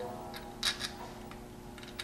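Three light metallic clicks in the first second as a brake caliper bolt and washer are handled and pushed through a trike's steering spindle, then quiet handling over a faint steady hum.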